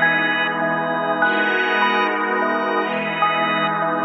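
ElectraX software synth playing a bell-sound melody loop at 150 BPM with the drums muted: sustained, overlapping pitched notes, a new one entering every half second or so.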